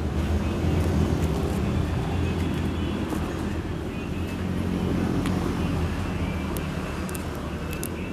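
Steady low engine drone of a motor vehicle running nearby, with a few faint clicks over it.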